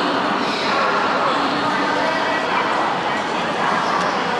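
Railway station public-address announcement in Mandarin calling passengers for high-speed train G8661 to ticket check at gate 3, echoing through a large hall.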